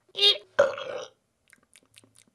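A burp in two quick parts, the second longer, followed by a few faint clicks near the end.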